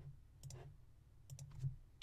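A few faint computer mouse clicks, including a quick double click about a second and a half in.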